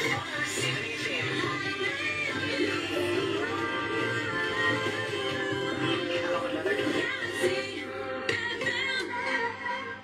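Radio station jingle: music with sung vocals.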